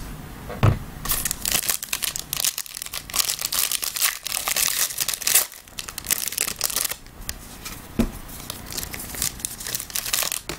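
Foil wrapper of a 2016 Playbook Football trading-card pack being torn open and crinkled by hand, with dense crackling from about one second in to about seven seconds, then softer rustling as the cards are pulled out. There is a short knock near the start and another about eight seconds in.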